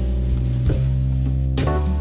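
Background music: sustained chords changing about every second and a half, with a light beat about once a second.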